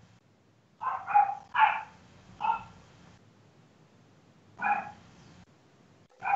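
A dog barking in short single barks: about four in quick succession, then one more a couple of seconds later.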